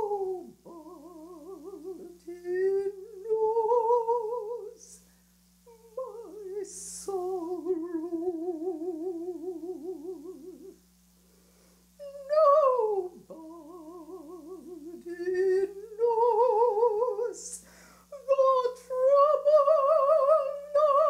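A woman's solo voice humming and singing a slow spiritual melody without words, unaccompanied, with a wide vibrato. She holds long phrases and pauses briefly between them.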